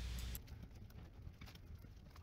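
Faint, soft, scattered footsteps of a group walking along a boardwalk trail. A low steady hum cuts off suddenly about half a second in.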